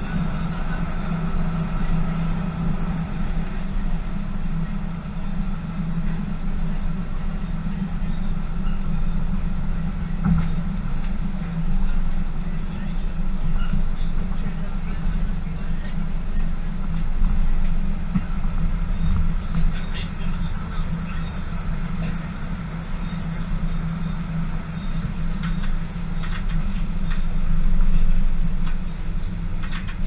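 Tyne & Wear Metrocar running along the track, heard from inside the cab: a steady low rumble of wheels and motors, with an occasional knock over the rails.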